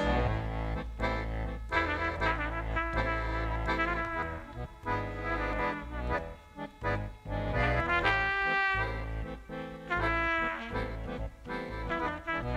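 Trumpet playing a solo melody over the band's accompaniment, which includes a steady low bass line. About eight seconds in, the trumpet holds a long note.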